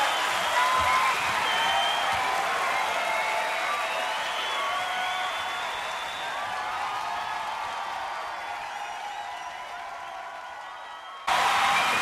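Concert crowd applauding and cheering, with scattered whoops, fading out gradually. Near the end it cuts off suddenly into louder sound.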